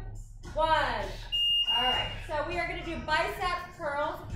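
Electronic beep from a gym interval timer: one steady high tone, under a second long, about a third of the way in, marking the change of interval. Voices talk around it.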